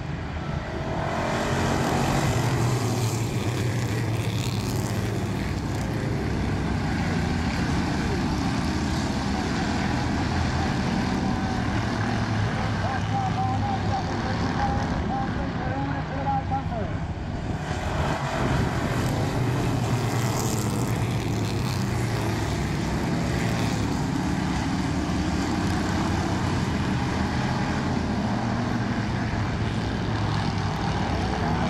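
A field of Street Stock race cars running laps around an oval track, a steady engine drone heard from the grandstand.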